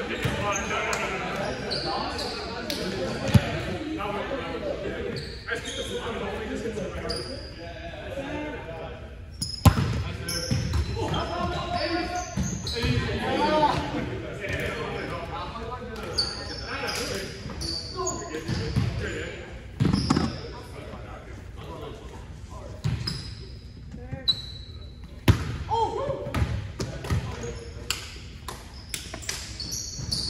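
Gymnasium sound of an indoor volleyball game: players' voices echoing in the large hall, with a ball hitting and bouncing on the court floor now and then, the sharpest hits about 3, 10, 20 and 25 seconds in, and many short high squeaks.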